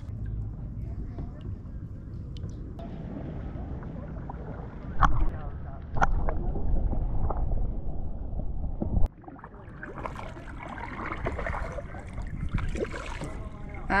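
An action camera held underwater: a muffled low rumble with two sharp splashy knocks about five and six seconds in, cut off suddenly just after nine seconds. After that, lighter water sounds of a kayak being paddled.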